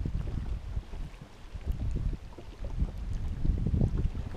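Wind buffeting the microphone as an uneven low rumble, with water lapping against the hull of a drifting boat.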